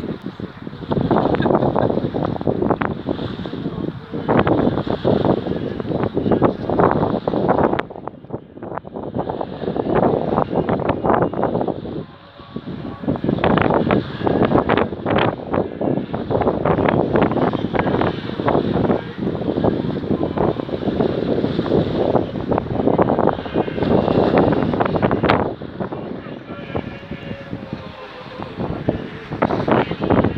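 Wind buffeting the microphone in uneven gusts, with a crowd's voices underneath.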